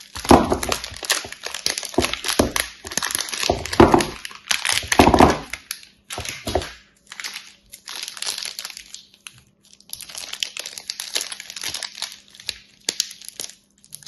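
Plastic soap wrappers crinkling and crackling as they are handled and opened, dense and loud for the first six seconds, then in shorter, quieter bursts. A faint steady low hum runs underneath.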